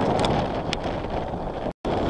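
Wind buffeting the microphone over open water, a steady low rumble, broken by a brief total dropout near the end.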